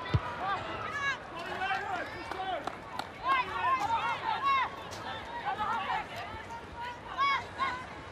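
Rugby players' voices shouting and calling to each other on the field, picked up by pitch-side microphones, heard as short, high, separate calls. There is a single low thump just after the start.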